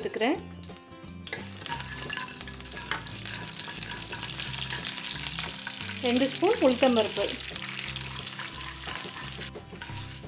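Mustard seeds sizzling and crackling in hot oil in a kadai: a tempering (tadka). The sizzle starts about a second in and cuts off shortly before the end. Urad dal is added and stirred in with a wooden spatula partway through.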